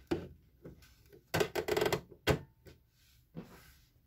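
Handling noises at a domestic sewing machine: a click, then a quick run of clicks about a second and a half in, a single sharp click, and fabric rustling near the end as the cut pieces are moved to the machine.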